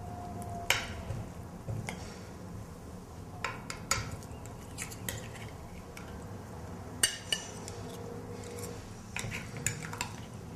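Metal serving utensil clinking and scraping against a glass baking dish and ceramic plates as a baked casserole is portioned out, in scattered short clicks over a low steady background.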